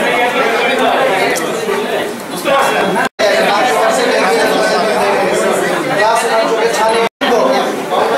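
Overlapping chatter of many people talking at once in a crowded hall, broken twice by a sudden, very short silence, about three and about seven seconds in.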